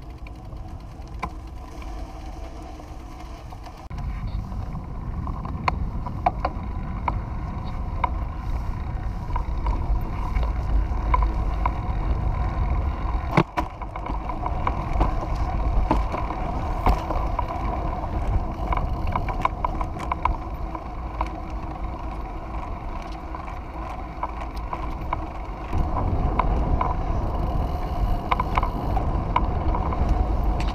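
Recumbent trike rolling along a paved path: wind rumbling on the microphone, heavier from about four seconds in and again near the end, over a steady whirr of tyres and drivetrain with scattered light clicks.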